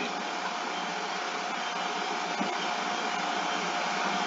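Steady hiss of background noise with a faint, even tone running through it, and no speech.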